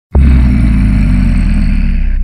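Opening of a singeli track: a loud, deep, steady rumbling drone that starts abruptly just after the beginning.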